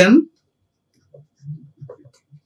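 The end of a spoken word, then faint, scattered soft taps and scratches of a pen writing a word on a digital writing tablet.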